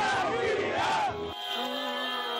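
A crowd of football fans shouting and cheering in celebration, many voices at once. A little over a second in, the shouting cuts off abruptly and music with steady held tones takes over.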